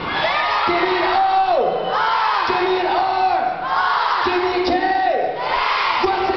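Large concert crowd of fans screaming and cheering, with many high-pitched screams overlapping throughout. A repeated chant of held notes that drop off comes about once every second and a half.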